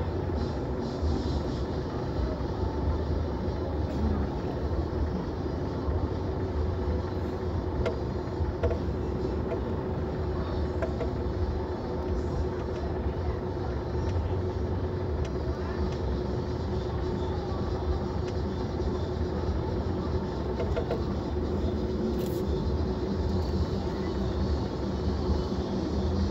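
Car running in slow stop-and-go traffic, heard from inside the cabin as a steady low rumble with a constant hum.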